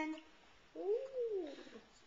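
A baby's single cooing vocalization, about a second long, rising and then falling in pitch.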